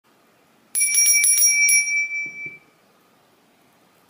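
A small bell struck about five times in quick succession, ringing with a bright high tone that fades away after about two seconds.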